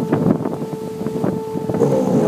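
Wind buffeting the microphone and water rushing along the hull of a large sailing yacht under way upwind in choppy seas. A steady humming tone runs under it and stops near the end.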